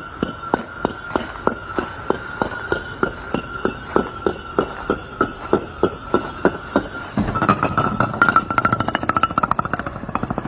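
Concrete landscape blocks toppling in a domino chain, each block clacking onto the next in a steady run of sharp knocks, about three or four a second. About seven seconds in the knocks come much faster and louder and close together, then stop near the end.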